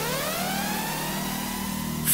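An engine revving up in one long rising sweep that levels off, over a steady low hum.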